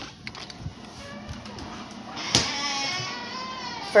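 Front door with a keypad deadbolt clicking open, then swinging open with a long, wavering creak. A sharp knock comes about two seconds in.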